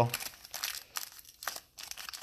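2020 Prizm football card pack wrapper crinkling in short, irregular crackles as hands work it open.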